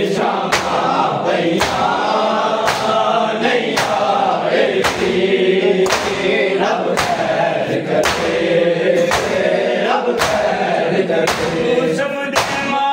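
Group of men chanting a mourning lament (noha) together while beating their chests in matam, a sharp slap of hands on bare chests about once a second in time with the chant.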